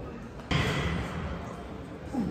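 A loaded barbell set in motion for an overhead press: a sudden thud about half a second in, followed by a rush of noise that fades over about a second.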